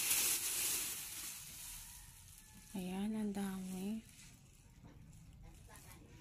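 Black plastic garbage bag rustling and crinkling as it is pulled back off a covered pot, dying away about two seconds in. About three seconds in, a short vocal sound lasting about a second.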